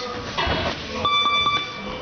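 Punches landing on focus mitts in a series of sharp slaps. About halfway through, a steady high electronic beep sounds for about half a second.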